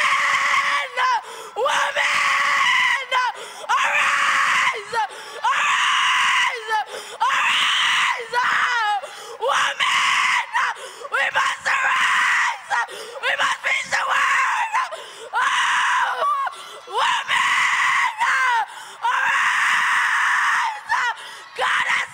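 A young woman screaming into a handheld microphone: over a dozen loud, strained cries without clear words, each about a second long with short breaks for breath between them.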